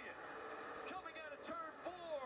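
Faint sound of a television race broadcast: a commentator talking, with race-car noise under it.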